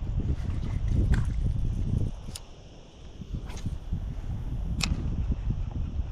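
Wind rumbling on an action camera's microphone, easing off for about a second near the middle. Four sharp ticks come at an even pace, about one and a quarter seconds apart.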